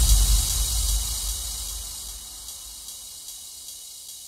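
The final deep bass note of a trap house electronic track dying away over about two seconds, with a high hiss fading out alongside it: the track's ending tail.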